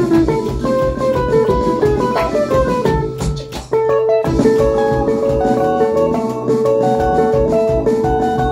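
A band playing a fast tune, with electric guitar over a bass and drum beat. The quick run of short notes breaks off about three and a half seconds in, and the band comes back with a long held note while a line of notes moves above it.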